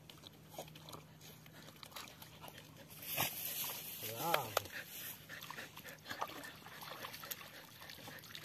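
An Australian Cattle Dog gives one short vocal call that rises and then falls in pitch, about four seconds in. It comes just after a brief burst of splashing as a dog moves through the shallow water.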